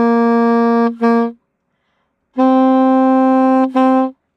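Alto saxophone playing a practice rhythm: a long held note followed by a short, hard-tongued accented note of the same pitch, then after a short pause the same pair a step higher.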